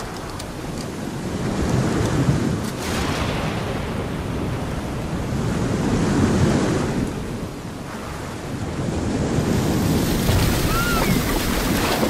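Rushing sea waves and wind, a steady noise that swells and eases, loudest around the middle and again toward the end.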